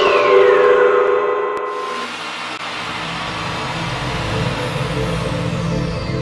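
Electronic soundtrack effect: a high tone glides steadily downward and fades about a second in, over held tones that stop about two seconds in, leaving a low steady drone.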